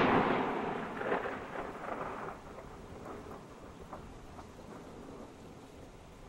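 Sound effect for an animated logo reveal: a noisy, crash-like burst that fades out over about two seconds and leaves a faint tail.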